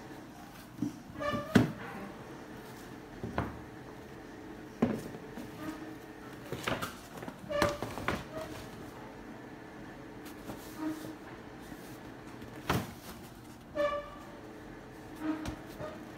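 A cardboard shoebox and a stiff kraft-paper shopping bag being handled: irregular knocks, taps and short crinkles of the paper and cardboard, the loudest about a second and a half in.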